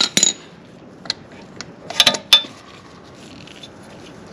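Metal hand tools clinking as a ratchet with socket extensions turns an oil filter wrench on a motorcycle's spin-on oil filter: several sharp, irregular clicks and clinks in the first half, one or two with a brief metallic ring, then only a faint steady background.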